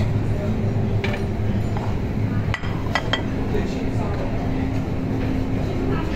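Metal serving tongs and a stainless-steel chafing-dish lid clinking as garlic bread is served, a few short sharp clicks about a second in and around the middle, over a steady low hum and background voices.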